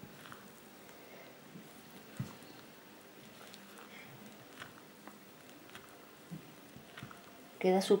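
A spatula stirring flour into thick magdalena batter in a glass bowl: faint soft scraping and squelching, with a few light ticks against the bowl.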